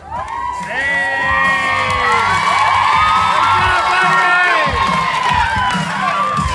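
A crowd of children screaming and cheering, many high voices overlapping, breaking out suddenly just after the start and staying loud.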